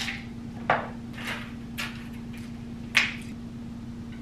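Three short knocks and clinks of small household objects being picked up and set down, about a second apart, over a steady low hum.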